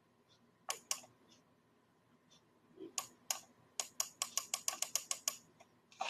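Typing on a computer keyboard: a few separate keystrokes, then a quick run of about a dozen near the end.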